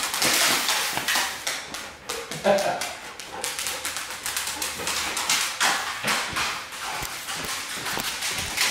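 A pet dog making excited noises as a man plays with it, with voices and frequent short clicks and knocks of movement around it.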